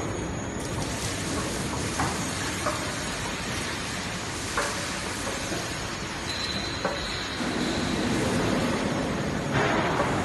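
Roll forming machine running, its steel forming rollers turning as coated steel roofing sheet feeds through: a steady mechanical rumble with a few sharp clicks and knocks. A thin high squeal sounds for about two seconds past the middle, and the rumble grows louder near the end.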